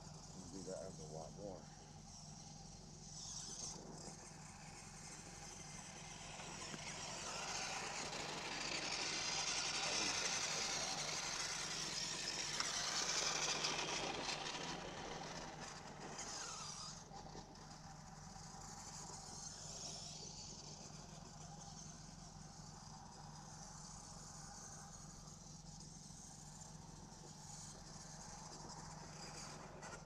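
Radio-controlled truck driving on the dirt track, its motor and tyres growing louder from about six seconds in, loudest around ten to fourteen seconds, then fading away.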